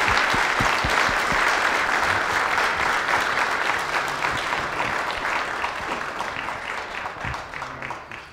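Audience applauding, a dense patter of many hands clapping that gradually dies away.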